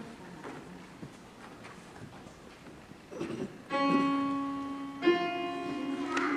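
Piano playing two held chords, the first about two-thirds of the way in and the second a second and a half later, after a stretch of faint hall noise.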